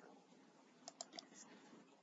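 Near silence with a few faint, sharp clicks, about four in quick succession roughly a second in.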